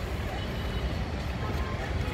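Steady rumble of distant road traffic.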